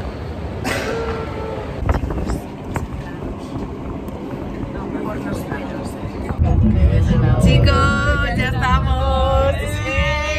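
Indistinct voices over a steady background bustle, then, about six seconds in, louder music with a singing voice takes over.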